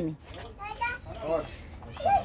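Young children's voices: a few short, high-pitched utterances and chatter at a low level.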